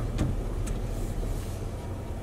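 Plow truck's engine running with a steady low rumble, heard from inside the cab as the truck pushes snow up a driveway.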